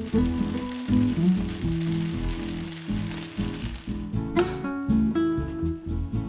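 Background instrumental music over the fine sizzling and crackling of paella rice in a frying pan on high heat, the sign that the last of the cooking liquid has boiled off; the sizzle fades after about four seconds.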